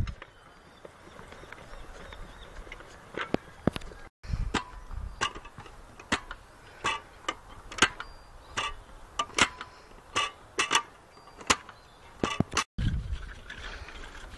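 Outdoor gym machine being worked: sharp metallic clicks and knocks from its moving joints, irregular at about one to two a second, some with a short ringing squeak.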